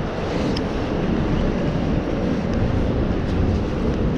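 Steady low rumbling outdoor noise with no distinct events.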